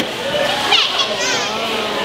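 Children and adults chattering in a busy room, with a short high squeaky sound a little under a second in.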